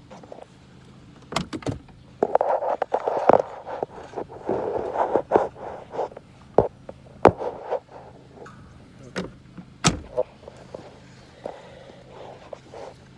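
Handling noise from a phone held inside a car: rustling and rubbing against clothing, with scattered sharp clicks and knocks over a steady low hum.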